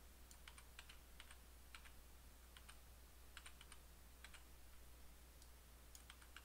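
Faint, irregular clicks of a computer mouse and keyboard being worked, over a low steady hum; otherwise near silence.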